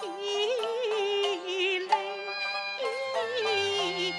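A female Cantonese opera singer holds long, melismatic notes with heavy vibrato over a steady instrumental accompaniment. A single sharp click sounds about two seconds in.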